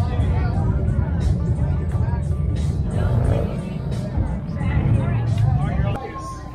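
People talking over a loud, continuous low rumble of motorcycle engines.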